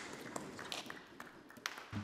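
Soft room noise in a debating chamber with several light taps and clicks, the small knocks of people handling papers and desks between speeches.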